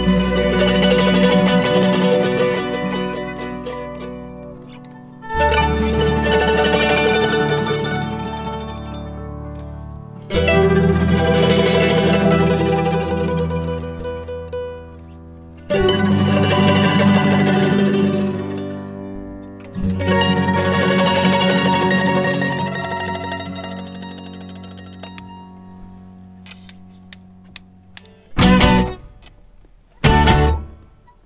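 An acoustic string band with guitar, mandolin, fiddle and upright bass plays the slow opening of a song. Five full chords are struck together about every five seconds, and each rings out and dies away over a low bass note. Near the end a few light ticks come, then a short strum.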